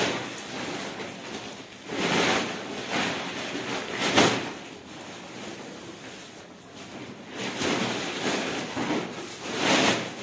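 Plastic bags rustling and being handled in irregular swells as things are rummaged through, loudest about four seconds in.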